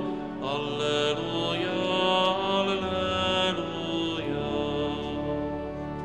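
Liturgical church music sung after the Gospel: chanting voices with instrumental accompaniment in slow, sustained chords that change every second or two and grow softer near the end.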